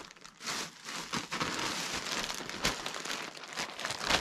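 Clear plastic bag rustling and crinkling as a bagged plush toy is pulled out and handled, a dense crackle with many small snaps starting about half a second in.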